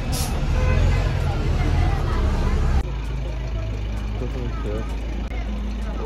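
Street ambience with people talking nearby over a low rumble of traffic. About three seconds in the rumble changes suddenly to a steadier low hum.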